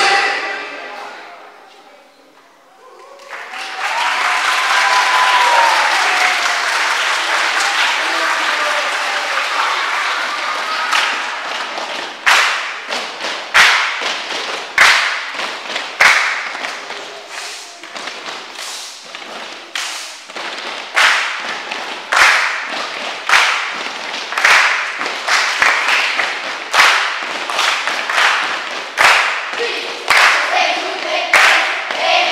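A hall full of children cheering and applauding after the music stops, with shouting voices over the applause. Partway through, the applause turns into steady rhythmic hand-clapping, about one sharp clap a second, with scattered voices over it.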